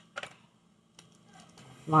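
A couple of small sharp clicks, one just after the start and one about a second in, from handling small makeup items such as a pencil or compact; a woman's voice starts near the end.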